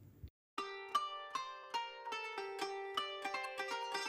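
Background music: a light melody of plucked string notes, starting about half a second in after a brief silence.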